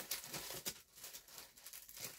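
Faint, irregular light clicks and paper rustles from hands handling small paper craft pieces on a cutting mat.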